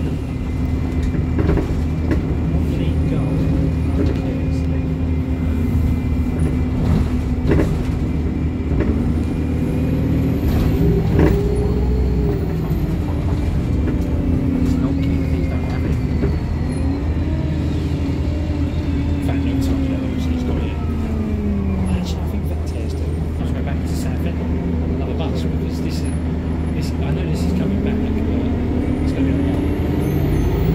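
Alexander Dennis Enviro200 MMC single-deck bus heard from inside the saloon: a steady low engine hum, with a pitched whine that rises and falls several times as the bus speeds up and slows, and occasional knocks and rattles from the body.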